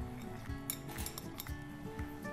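Diced celery tipped from a small glass bowl into a nonstick skillet: a few light clicks and clinks of bowl and pieces on the pan about a second in, over soft background music.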